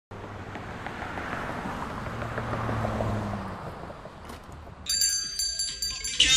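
Noisy outdoor ambience with a low vehicle drone that swells and fades. About five seconds in, music starts with high chiming synth notes.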